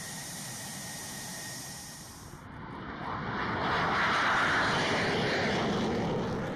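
F-16 jet engine running on the ramp with a steady high hiss. About two and a half seconds in, this gives way to an F-16 jet passing overhead, growing louder to a peak a little past the middle and then starting to fade.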